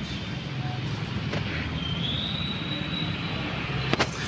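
Steady background rumble and hiss, with a faint high whine that starts a little under two seconds in, rises slightly and fades near the end.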